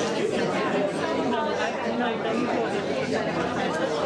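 Many people talking at once: overlapping, indistinct chatter of a crowd, with no single voice standing out.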